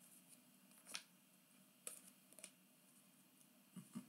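Near silence with a few faint ticks and light rustling from glossy trading cards being flipped through in the hands, the clearest tick about a second in.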